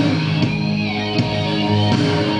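Guitar-led rock music playing loudly through a vintage hi-fi: a Gradiente R-343 receiver driving Aiwa SX-NH66 speakers at volume 4, with a strong, sustained bass line, heard through the room.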